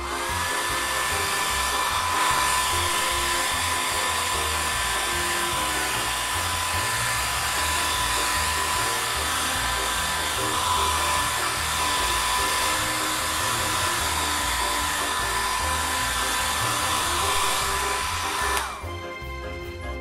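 Hair dryer running with a steady whine over an airy hiss, switched off near the end as its whine drops in pitch and dies away.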